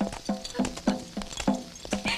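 A horse's hooves clip-clopping at a walk: knocks about three times a second in an uneven one-two pattern, each with a brief ringing tone.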